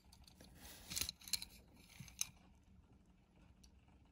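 Faint handling noise from fingers turning a small diecast toy van: a few light clicks and rubs, a cluster about a second in and one more just after two seconds.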